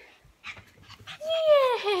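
A small dog pants and snuffles faintly, with light rustling. About a second in, a woman's voice comes in with a loud, drawn-out cooing call that falls in pitch.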